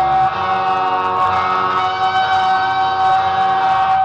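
Electric guitar solo on a Stratocaster-style guitar, holding one long sustained lead note through the whole stretch.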